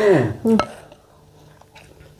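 A short spoken sound with a falling pitch, then quiet with faint chewing as people eat by hand.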